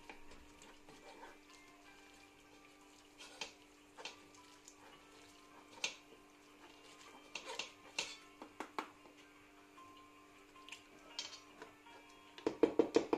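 Wooden spoon scraping and tapping against a stainless steel mesh sieve as cooked vegetables are pressed through it: scattered short scrapes and clicks, over faint background music.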